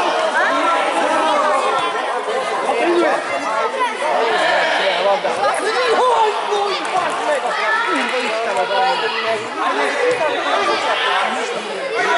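A steady babble of many overlapping voices, the players and onlookers of a children's football game calling out at once, echoing in a large indoor sports hall.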